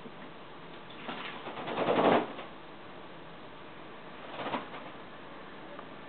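Young doves bathing in a shallow dish of water, fluttering their wings in it: a rapid fluttering splash starts about a second in, builds and stops short after about a second, then a shorter, fainter flurry comes near the middle.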